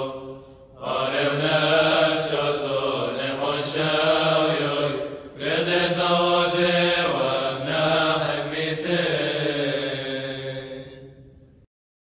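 Syriac Orthodox liturgical chant sung by men's voices in long melodic phrases, with short breaks about half a second in and about five seconds in. It fades and then cuts off suddenly near the end.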